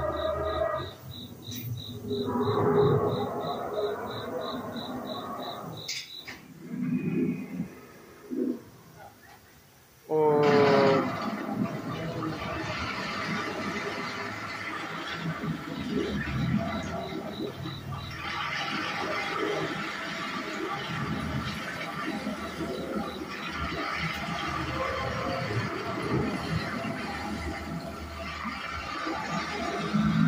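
Recorded soundtrack of an animatronic dinosaur scene played over the ride's speakers: a pulsing high tone and scattered effects at first, a short lull, then a sudden loud roar-like cry about ten seconds in, followed by continuous music and effects.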